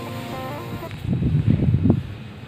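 Soft background music, then, from about a second in, loud irregular low rumbles and a knock from a handheld phone being handled and lowered as the recording ends.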